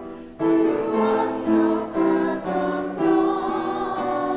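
Congregation singing an Advent hymn in unison with keyboard accompaniment, in slow held notes that change about every half second.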